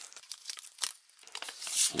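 Clear plastic wrapping crinkling and tearing as a CD is unwrapped, in dense crackles in the first second, then a few thinner ones.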